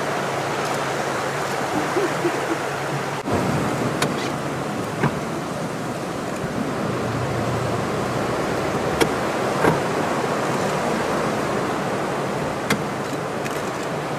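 Steady wash of sea water and wind around a small open boat, with a few faint knocks scattered through it.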